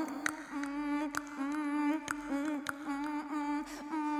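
A woman's voice holding a steady hummed drone on one low note, crossed by about five sharp clicks.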